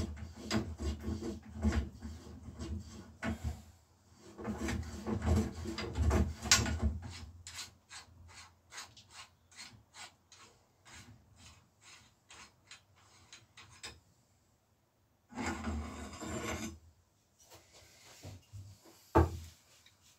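Bicycle headset being taken apart, with its rusty cups, and the fork worked out of the head tube: gritty metal scraping and rubbing, then a run of quick, even clicks, about four or five a second. A brief scrape follows, and a single sharp knock near the end.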